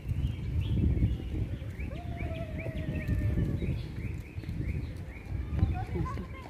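A bird calling in a long run of short, repeated chirps, about three a second, with one longer, slightly falling whistle in the middle. Underneath is a steady low rumble.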